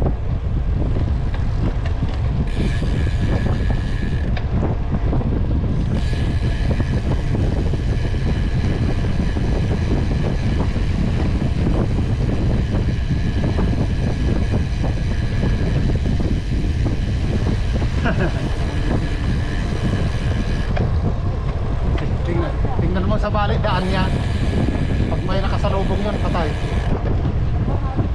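Steady wind rush and rumble on the microphone of a camera on a bicycle in motion, with brief voices near the end.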